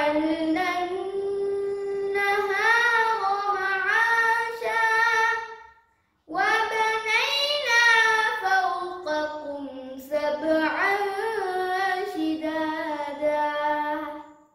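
A boy reciting the Quran in the melodic, chanted qira'at style, his voice held and ornamented over long phrases. Two long phrases, with a short breath pause about six seconds in.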